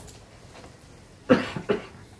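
A person coughing: two short coughs about a second and a half in, the first the louder.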